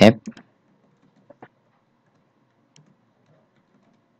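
A few faint, scattered computer keyboard keystrokes as a name is typed, spaced irregularly with short gaps between them.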